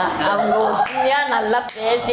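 Hands clapping several times, sharply, in the second half, mixed with laughing voices.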